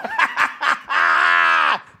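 A man laughing hard: a few short bursts, then one long drawn-out laugh that falls in pitch at the end.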